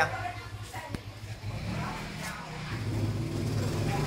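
A motor engine running steadily with a low hum, growing a little louder in the second half, with a single sharp click about a second in.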